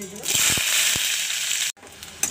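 Sliced onions hitting hot oil and mustard seeds in a kadai, setting off a loud sizzle. The sizzle starts about a quarter second in and cuts off suddenly near the end.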